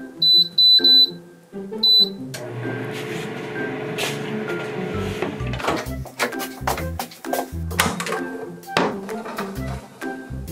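Five short, high electronic beeps in the first two seconds, as from an appliance keypad being pressed, over light background music. A steady hiss follows for a few seconds, then several dull knocks.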